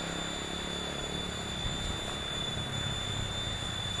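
Steady outdoor background noise with a constant high-pitched whine; no distinct handling sounds stand out.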